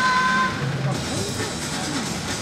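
Athletics stadium sound during a race: crowd noise mixed with voices and music, with a brief held note in the first half second.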